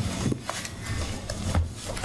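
Large boards and a folder being handled and set down on a wooden podium: rustling and rubbing with several short knocks and dull thuds.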